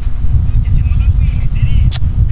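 Steady low rumble of a car on the move, with faint voices underneath. A sharp click comes near the end.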